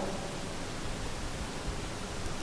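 Steady hiss: the recording's background noise, with nothing else sounding.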